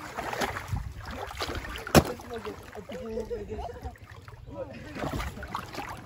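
People talking quietly over a low rumble of wind on the microphone, with one sharp knock about two seconds in.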